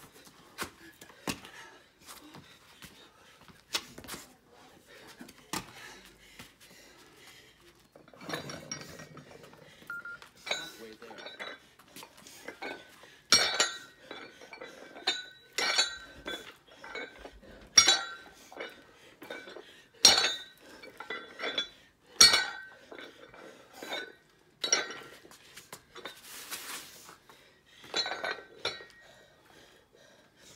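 Plate-loaded dumbbell clinking on each snatch rep, a sharp metallic clink with a short ring about every two seconds, as the loose plates knock on the handle and the dumbbell touches the stone paving. Softer knocks and shuffling come before the clinks start.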